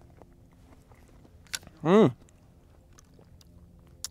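A man eating canned peaches: faint wet chewing clicks, then a short appreciative 'hmm' hum about two seconds in, its pitch rising then falling.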